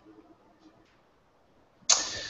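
Faint room tone with a few soft ticks, then near the end a sudden loud breathy rush from a person, an exhale that fades out over about a second.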